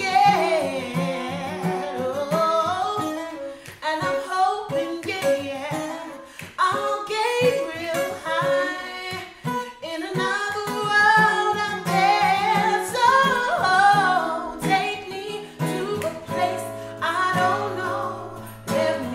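A woman singing a slow song, holding and bending long notes, accompanied by a plucked acoustic guitar.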